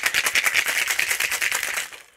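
Ice cubes rattling hard and fast inside a cocktail shaker being shaken, in a quick even rhythm that stops just before the end.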